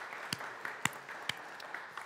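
Applause from a small church congregation: a soft haze of handclapping with a few separate, sharper claps standing out.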